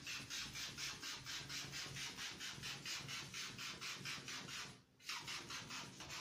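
Hand squeeze-bulb atomizer spraying aftershave onto the face in quick, even hissing puffs, about five a second. The puffs pause briefly about five seconds in, then start again.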